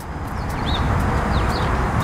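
Outdoor background: a steady hiss and low rumble, with a few short, high chirps from a small bird around a second in.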